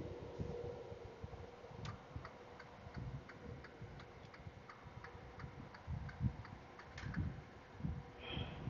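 Faint, regular ticking, about three ticks a second, starting about two seconds in and stopping near the end, over a soft uneven low rumble.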